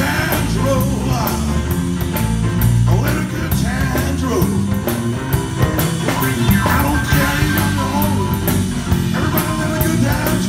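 Live rock and roll band playing: a man singing over stage piano, electric bass and a drum kit keeping a regular beat.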